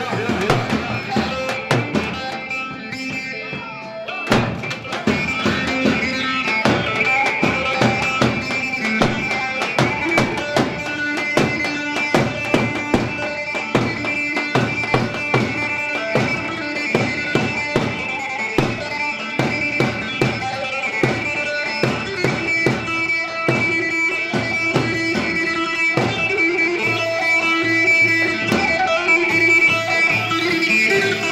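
Live Turkish halay dance music: a drum kit keeps a fast, steady beat under an amplified plucked saz melody. The beat thins out briefly and comes back in full about four seconds in.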